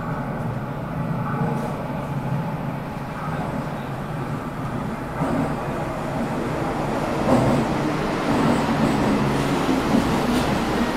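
Toei Ōedo Line subway train pulling into the station, its rumble growing louder over the last few seconds as it arrives.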